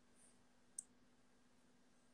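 Near silence with a faint steady hum, broken by a single short, faint click a little under a second in.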